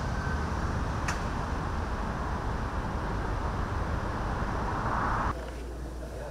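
Steady urban traffic noise, a low road rumble with hiss, with one sharp click about a second in. It swells briefly, then cuts off suddenly about five seconds in to a much quieter indoor room tone.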